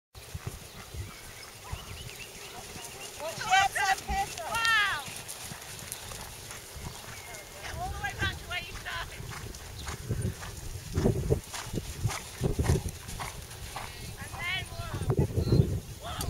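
Wind buffeting the microphone in gusts, with a few short, high-pitched calls from voices a few seconds in, around the middle and near the end.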